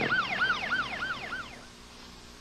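Ambulance siren in yelp mode: a rapid rising-and-falling wail, about five sweeps a second, fading out about a second and a half in.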